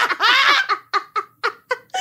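Women laughing: one long high laugh in the first second, then a run of short breathy bursts of laughter.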